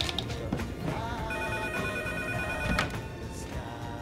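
Telephone ringing, one steady ring lasting about a second and a half, over background music.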